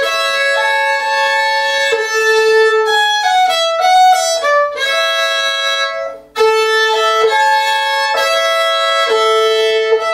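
Solo violin, bowed, playing a grade 3 study in double stops, two notes sounding together and moving from one pair to the next. The playing breaks off briefly about six seconds in, then carries on.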